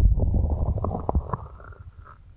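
Hands cupping and rubbing over the ears of a binaural ear-shaped microphone: a muffled low rumble with soft crackles, fading away over the second half.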